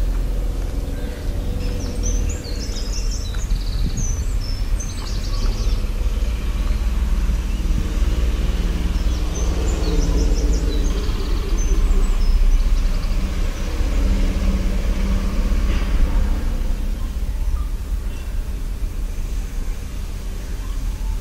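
Birds chirping in short scattered bursts, a few seconds in and again around the middle, over a steady low outdoor rumble that swells and fades around the middle.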